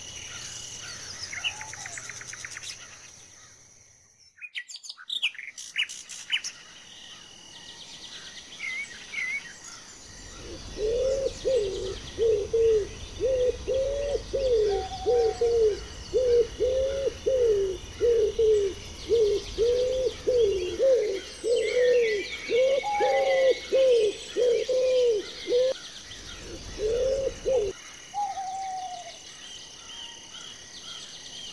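A spotted dove cooing: a long, even series of low soft coos at about two a second, starting about ten seconds in and stopping near the end, with a brief break shortly before. Higher chirps of small birds run throughout. In the first few seconds, before a short lull, higher bird calls fit the parakeets.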